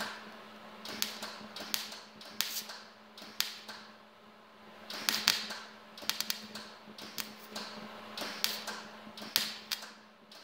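MIG welder arc crackling in short stop-start bursts as the end of a steel fuel-line tube is welded closed, with a steady low hum underneath.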